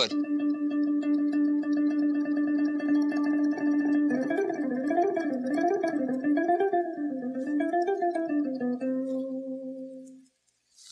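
Electric guitar tremolo-picking a single note, struck rapidly and evenly. About four seconds in, the pitch starts swinging slowly up and down in wide waves, then it settles and the note fades out near the end.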